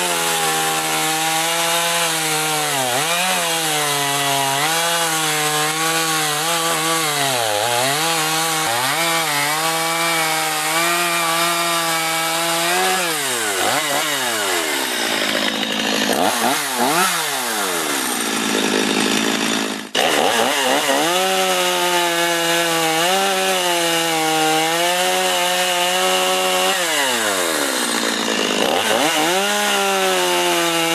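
Stihl MS 250 two-stroke chainsaw at full throttle cutting through logs, running on a newly fitted sprocket and needle cage bearing. The engine note keeps dipping and recovering as the chain bites into the wood, then rises sharply as it comes free. About two-thirds through the sound breaks off for an instant and the cutting carries on.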